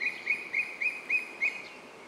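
A bird calling a rapid series of short, high chirps, about three or four a second, over faint outdoor ambience. The calls stop about a second and a half in.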